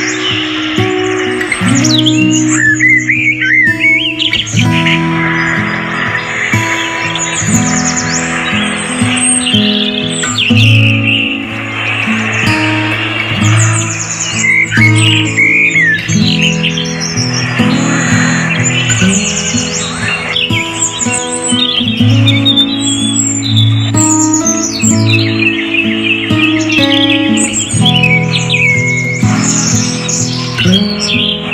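Background music of held, gently changing instrumental notes, with birds chirping and twittering over it throughout.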